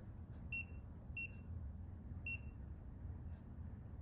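TENS 7000 unit's keypad beeping as its buttons are pressed: three short, high-pitched beeps at uneven intervals, each one confirming a keypress while the stimulation settings are entered.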